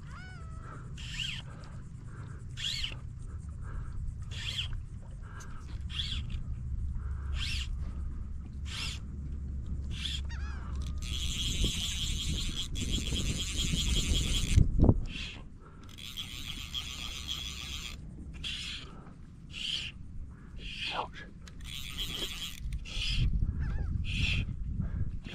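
A fly reel's drag buzzing in two runs, about three seconds and then two seconds long, as a hooked redfish pulls line off the reel. Short high chirps repeat about every second and a half throughout, over a low rumble.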